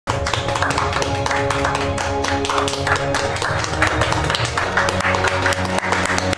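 Music with held notes, overlaid by repeated hand claps from a few people clapping together.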